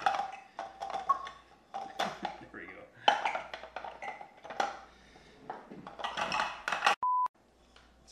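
Talking over sharp clicks of plastic parts as a Black+Decker mini food chopper's blade and bowl are fitted together. Near the end, a short, steady high beep sits in a brief moment of silence.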